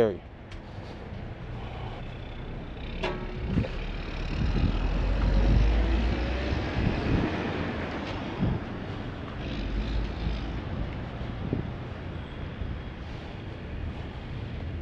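Roadside traffic noise: a passing vehicle's engine and tyre rumble swells to a peak about five or six seconds in and then fades.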